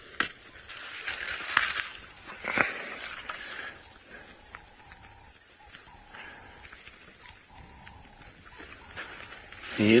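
Rustling and scuffing of a person getting up off a sandy mound with a wooden walking stick and radio, with a sharp knock just after the start. It then goes quieter, with a few faint short animal calls, and a man's voice starts at the very end.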